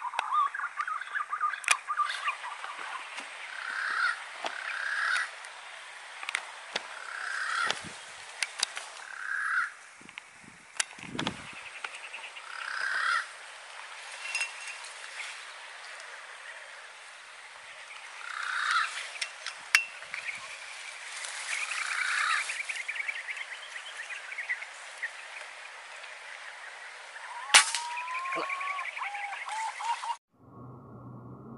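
Green pigeons (punai) calling: rising, wavering whistles at the start and again near the end, with short calls repeated every second or two in between. A sharp click sounds near the end.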